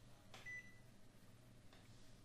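A short electronic beep from the control panel of an Epson XP-610 inkjet printer, about half a second in, just after a soft click. Otherwise near silence with faint handling clicks.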